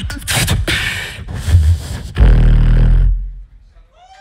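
Solo beatboxing into a stage microphone: hissing snare and cymbal-like sounds, then a loud deep bass held for about a second near the middle, dropping away to near quiet just before the end.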